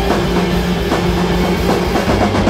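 Live instrumental rock band playing loudly on electric guitar, bass and drums, with a low droning note held steady through the passage and a few drum hits.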